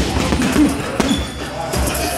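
Boxing gloves punching a heavy bag: sharp thuds, one at the start and one about a second in, over music playing in the gym.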